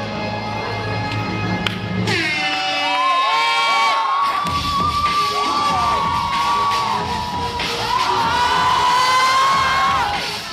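Dance routine music with crowd cheering. About two seconds in, the beat drops out under a falling pitch sweep, and held tones that bend in pitch follow.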